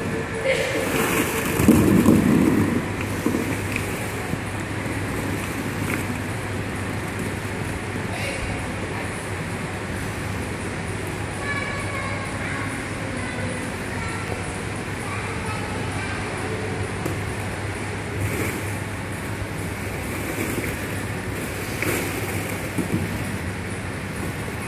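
Steady background of a large indoor play hall, distant voices carrying through the room. It is louder and closer for the first three seconds.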